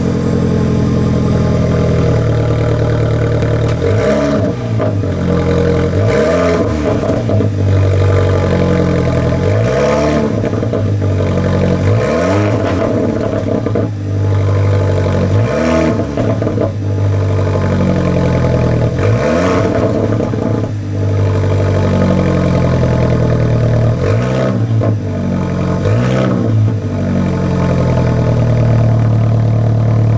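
Alfa Romeo 4C's 1750 cc turbocharged four-cylinder idling steadily, blipped every couple of seconds with short revs that rise and drop straight back to idle.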